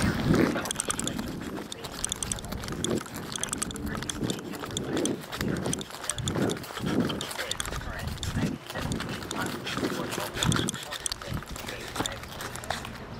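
Footsteps on pavement, an uneven thump every second or so, with clicks and rustle from a handheld camera being carried while walking.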